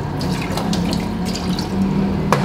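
Kitchen faucet running a steady stream of water into a drinking glass at the sink.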